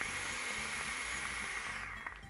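A long, steady, airy hiss of breath from a vaper, drawing on or blowing out a puff of vapour, fading out near the end.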